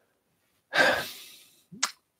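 A man's breathy sigh, strong at first and fading over under a second, followed near the end by a brief mouth click.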